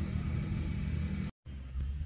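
Steady low engine rumble, like a motor vehicle idling, with a light hiss over it. The sound drops out completely for a moment just past the middle, then the same hum resumes.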